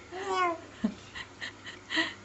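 Two-month-old baby cooing: one drawn-out vocal sound that glides in pitch, her early pre-speech vocalising, followed by a few faint small sounds.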